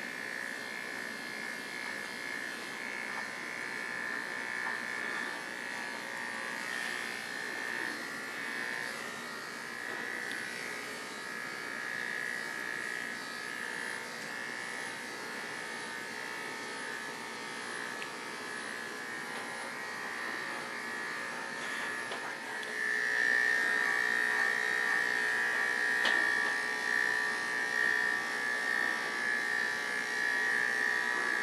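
Corded electric dog clippers running with a steady buzz as they cut a miniature schnauzer's coat. The buzz gets louder about two-thirds of the way through.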